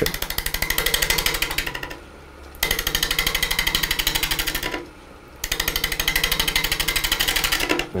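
Turning tool cutting the bark-edged rim of a spinning stacked basswood blank on a wood lathe: a rapid, even chatter of an interrupted cut, in three passes with short pauses between them, the lathe humming steadily underneath.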